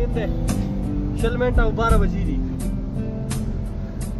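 A song with a singing voice and a beat playing on a car stereo, heard inside the car cabin.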